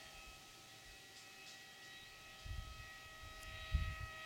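Steady high-pitched hum of a small quadplane's electric motor and propeller in forward flight at a distance. In the second half, low rumbles of wind on the microphone.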